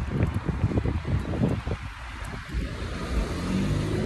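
Wind buffeting a phone microphone along a street, with a car going by; its engine hum builds up near the end.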